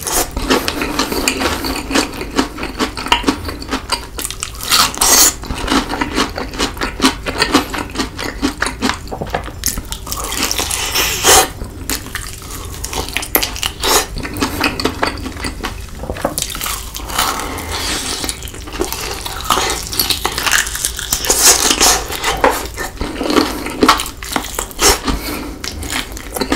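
Close-miked eating of spicy Cheetos-crusted fried chicken: dense, irregular crunching of the coating as it is bitten and chewed, with wet mouth sounds. Louder bursts of crunching come about 5 s, 11 s and 21–24 s in.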